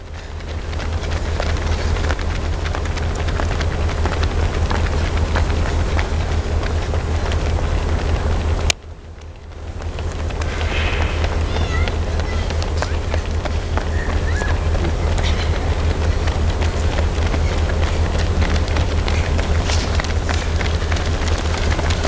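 Outdoor street ambience dominated by a steady low rumble of wind on the microphone, with a few faint distant voices. The sound cuts out with a click about nine seconds in, then fades back up.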